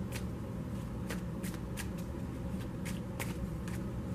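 Tarot cards being shuffled by hand: a string of light, irregular snaps and clicks, about two or three a second, over a steady low hum.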